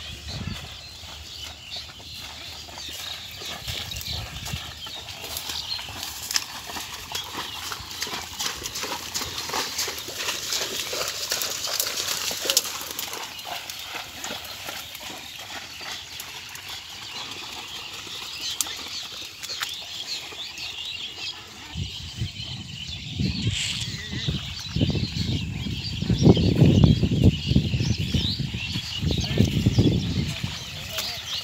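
Water buffalo hooves plodding and splashing through mud and wet grass, with many small clicks and rustles. The low, irregular thuds and splashes grow louder over the last several seconds.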